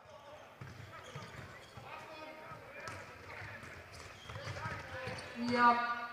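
Game sound from a floorball match in a sports hall: faint players' voices and light clicks of sticks and the plastic ball. Commentary speech begins near the end.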